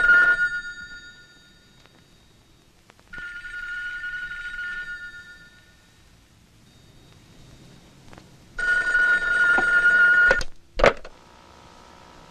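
A telephone bell rings three times, each ring lasting one to two seconds with a few seconds between. Two sharp knocks follow near the end.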